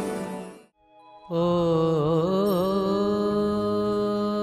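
Intro theme music fades out, and after about half a second of near silence a harmonium starts a sustained drone. A voice slides and wavers briefly over it.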